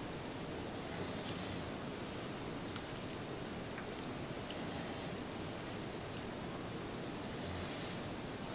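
Faint steady background hiss with soft rustling now and then, as hands roll raw bacon strips around asparagus spears on a wooden cutting board.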